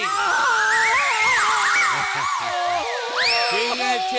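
A man screaming in pain after his hand is forced into hot frying oil. The screams waver, rise and fall, and leap to a high shriek about three seconds in, over comic film music.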